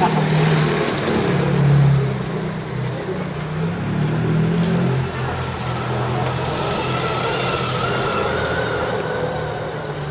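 Street traffic: a car engine running close by and pulling away, loudest about two seconds in, then settling into a steadier hum of road noise.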